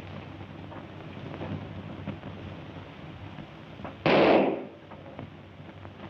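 A single gunshot about four seconds in, a sharp loud crack that dies away within half a second, over the steady low hum and hiss of an old film soundtrack.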